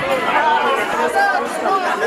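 Crowd chatter: many people talking and calling out at once in a large hall, with no music playing.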